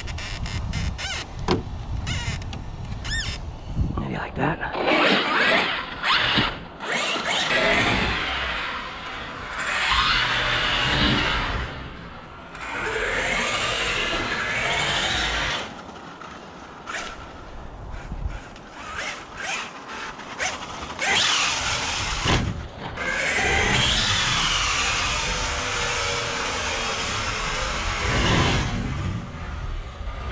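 Brushless electric motor and drivetrain of a Losi Super Baja Rey 2.0 RC desert truck whining in repeated bursts as it accelerates and lets off, the pitch rising and falling, with tyres scrabbling over a dirt track.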